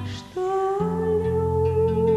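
A woman singing one long held note with a slight vibrato, entering about a third of a second in after a brief dip, over acoustic guitar accompaniment.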